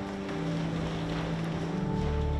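A church organ holds a low note that steps down a third of the way in, and a new fuller chord enters near the end. Under it is a steady rustling wash of noise from the congregation getting to its feet.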